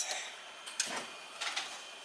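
Faint sliding with a few light clicks as the lower platen of an HTVRONT heat press is drawn out from under the heating plate.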